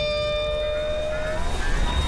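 Tail of a TV show's bumper jingle: a few held tones ring out over a low rumble, the strongest stopping at about a second and a half in, with a faint rising sweep near the end.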